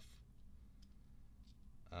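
Near silence: low room tone with a few faint, short clicks.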